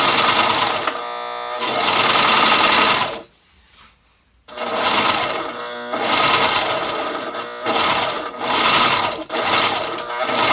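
Sewing machine stitching a zigzag seam along the edge of a car floor carpet. It runs in stretches, slows briefly about a second in, stops for about a second and a half around three seconds in, then restarts with several short stops and starts.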